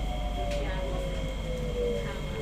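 SMRT C151B metro train (Kawasaki–CRRC Qingdao Sifang) heard from inside the carriage as it brakes into a station. Its traction motor whine falls steadily in pitch over a low rumble of the running gear as the train slows to a stop.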